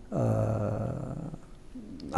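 A man's voice holding a low, steady hesitation sound, a drawn-out 'eeh' between phrases, for just over a second before it fades.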